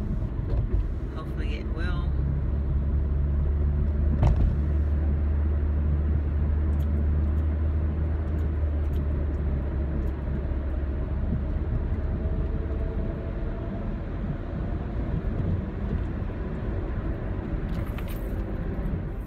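Car cabin noise while driving: a steady low engine and road drone that turns rougher about thirteen seconds in, with a faint rising whine over the last few seconds. A single sharp click comes about four seconds in.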